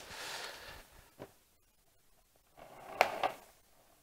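Quiet handling sounds: a faint rustle, a single click about a second in, then a couple of light knocks near three seconds in, as a polystone statue piece and its packaging are handled on a table.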